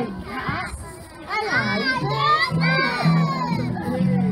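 A group of young children singing loudly together over guitar accompaniment, their many voices overlapping, with a brief dip about a second in.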